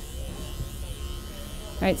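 Corded electric pet clippers with a comb attachment buzzing steadily as they are run through a Bichon's thick, cottony coat on the chest and front leg.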